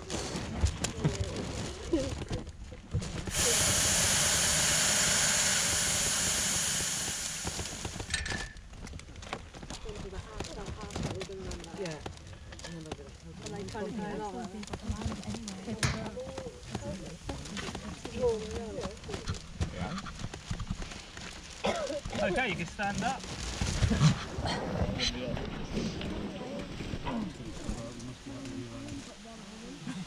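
Hot air balloon propane burner system giving a loud, steady hiss for about four seconds, starting about three seconds in, after the basket has touched down. Around it, quieter voices and rustling in the basket.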